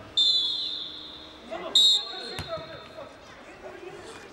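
Referee's whistle blown twice, a longer shrill blast at the start and a short one a little under two seconds in, signalling half-time. A single sharp knock follows about half a second later.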